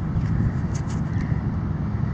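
Steady low outdoor rumble, with a few faint ticks near the middle.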